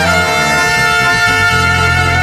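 Mexican brass banda playing an instrumental passage: trumpets and trombones hold a steady chord over sousaphone bass.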